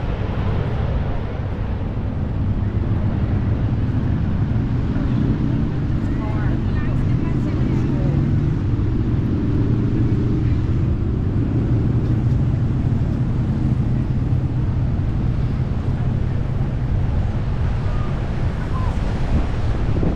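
Outdoor ambience: a steady low rumble, with indistinct voices of people walking nearby.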